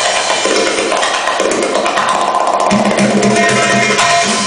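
Live band playing belly-dance music on keyboard and percussion, loud and dense; a fast, even low beat comes in about two and a half seconds in.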